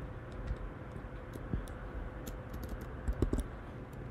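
Computer keyboard in use: scattered, irregular key presses and clicks over a faint steady hum.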